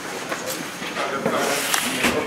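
Indistinct talking of several people in a group, with a few faint clicks.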